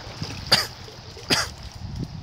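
A person coughing twice, close by, a little under a second apart.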